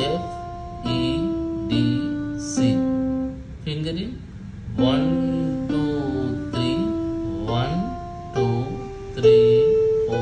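Yamaha electronic keyboard played one note at a time, about one note a second, stepping down the C major scale to C. After a short break it climbs back up the scale.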